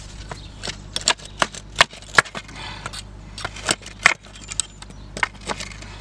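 Claw hammer striking a rusted nail stuck in a reclaimed pallet board: about a dozen sharp, irregular knocks, a couple of them much louder than the rest.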